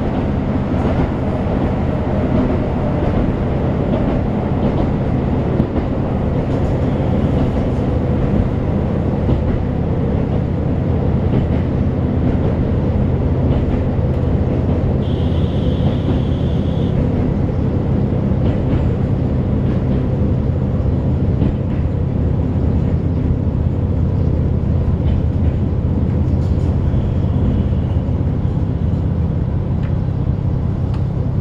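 Diesel railcar heard from inside the passenger car while running, with a steady low engine drone and wheel-on-rail noise. A brief high-pitched tone sounds about halfway through.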